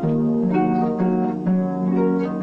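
Concert harp played solo: plucked notes ringing on, with a new low note struck about twice a second under a higher melodic figure.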